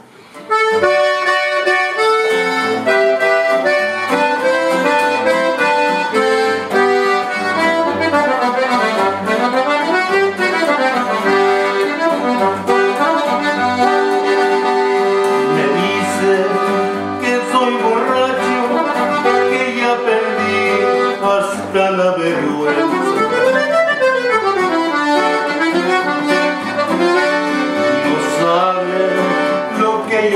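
Conjunto-style instrumental intro. A diatonic button accordion plays the melody with quick runs up and down, over a bajo sexto strumming chords on a steady bass beat. The music starts about half a second in.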